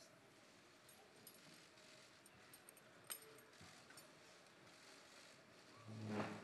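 Near silence: faint room tone with a few soft clicks, the clearest about three seconds in.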